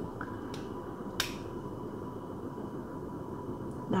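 A piece of ginger root being handled and set on a digital kitchen scale: a faint tick about half a second in, then one sharp click about a second in, over a low steady hum.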